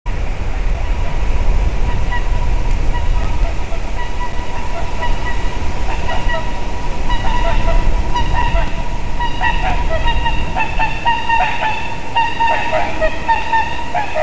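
Swans calling in flight: repeated short honking calls, sparse at first, then louder and more frequent from about seven seconds in. A low wind rumble on the microphone runs underneath.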